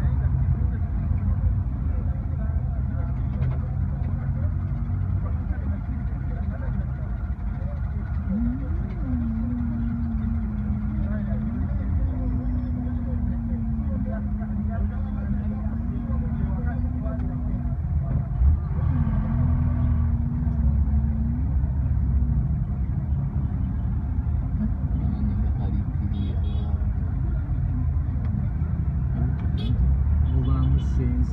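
Steady low rumble of idling engines in stationary traffic, heard from inside a vehicle, with a single held low tone running through the middle for several seconds.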